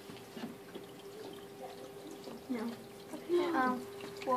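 Faint water running through a tabletop stormwater floodplain model, under a steady hum and a few quiet voices.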